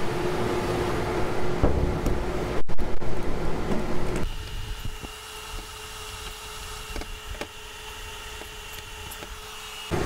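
Inline duct fan for a door-mounted HEPA filter running with a steady whooshing hum. About four seconds in, the sound drops to a quieter, even hum with a faint high whine, and a few light clicks come as the filter's clamp is handled.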